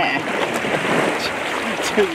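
Shallow sea water sloshing and splashing around a person wading waist-deep, a steady rushing noise that follows a short bit of voice at the start.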